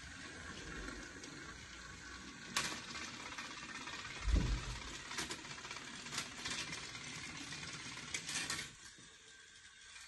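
Battery-powered toy trains running along plastic track: a steady mechanical whirr with a few clicks and a low knock, which stops near the end.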